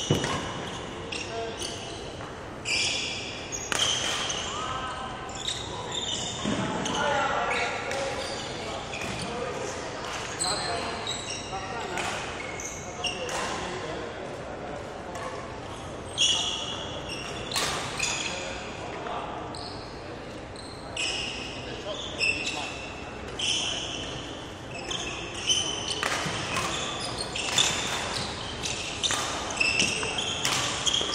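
Court shoes squeaking and feet landing on a wooden sports-hall floor in quick, irregular bursts of badminton footwork, echoing in the large hall.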